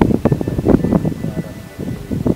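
A man talking, with background music laid underneath.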